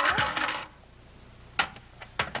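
Plastic shapes clattering against a plastic shape-sorter cube: a quick cluster of clicks and rattles in the first half second, then a single sharp click about a second and a half in.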